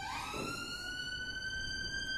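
An emergency-vehicle siren wailing: its single pitch rises through the first second, holds high, then stops near the end.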